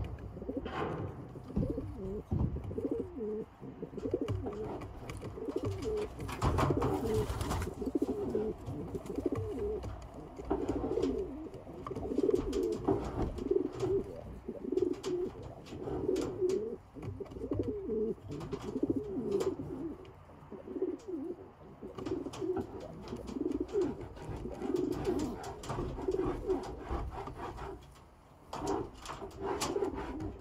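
Domestic pigeons cooing over and over, low coos following one another through the whole stretch, with a few short rustles and taps among them.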